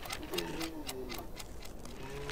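Quick, uneven ticking like a clock, over a low wavering hum that bends up and down in pitch.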